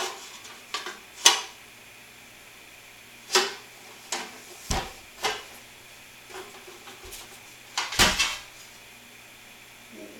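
A metal power inverter case being lifted and set down in its styrofoam packing: a series of irregular knocks and scrapes, with low thumps about five and eight seconds in, the second the loudest.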